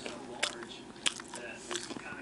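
Crisp hard-shell taco being bitten and chewed close up. The shell cracks in sharp crackles, loudest about half a second and a second in.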